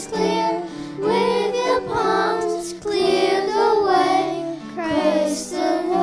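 A group of young girls singing together into microphones, the phrases rising and falling with short breaks between them.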